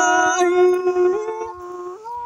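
A voice singing a Thai khắp folk song, drawing out one long held note at the end of a phrase, with small steps in pitch. It fades down about one and a half seconds in.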